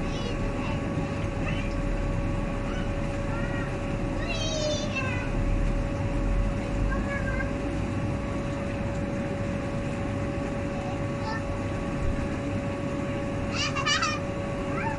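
Outdoor background sound: a steady hum, with a few short high-pitched chirping calls about four seconds in and again near the end.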